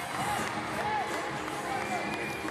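Handball arena crowd noise, steady throughout, with a short rising-and-falling note heard three times above it.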